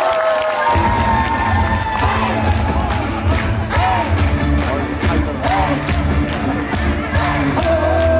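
Amplified live music for the next song kicks in with heavy bass and a steady drum beat about a second in, over an audience cheering and shouting.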